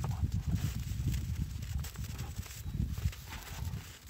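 Black bears play-fighting in snow, making low grunts and growls, with scuffling and scattered short clicks as they wrestle.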